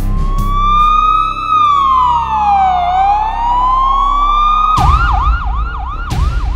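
Police siren in a slow wail, rising, falling and rising again over about five seconds. Near the end it switches to a fast yelp, two or three quick sweeps a second.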